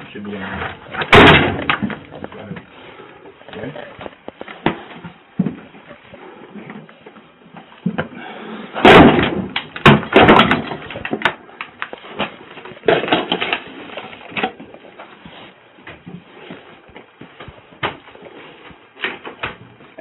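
Muffled, unclear voices with knocks and rubbing noise on a body-worn police camera's microphone as it is jostled against clothing and gear. The loudest bumps come about a second in and again around nine to ten seconds.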